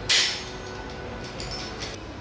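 Metal clinks and handling noise from a stainless steel knob lockset being turned over in the hands: a louder rustling knock just after the start, then a few light clicks near the end as a thin pin is brought to the knob's release hole.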